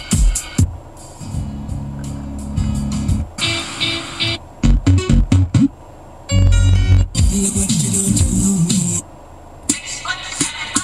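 Music played over the car speakers from a newly installed Pioneer DEH-3400UB head unit, reading songs off a phone over USB. It is loud and bass-heavy, and it cuts abruptly between different pieces several times.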